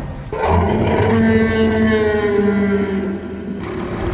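Tyrannosaurus rex roar from the film's soundtrack: one long drawn-out call of about three seconds that sinks slowly in pitch, as the tranquilizer dart in its neck takes effect.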